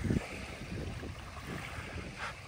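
Wind buffeting the microphone over small waves lapping at a sandy shoreline, with a short louder gust at the start.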